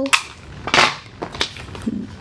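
A few sharp clicks and knocks of a hard plastic storage container being handled, the loudest a little under a second in.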